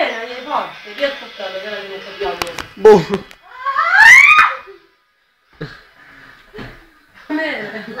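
Young people's voices and exclamations during rough play, with a few sharp knocks or slaps, then a loud rising shriek about four seconds in.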